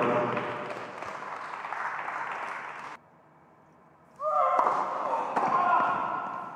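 Voices in a reverberant indoor tennis hall: a man laughs and says "thank you". The sound drops out abruptly for about a second near the middle, then another voice speaks over the hall noise.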